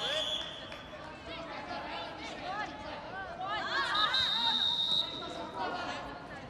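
Shouting voices from coaches and spectators in a large hall through a wrestling bout, with a referee's whistle blown twice, each blast about a second long: once at the start and again about four seconds in, stopping the action.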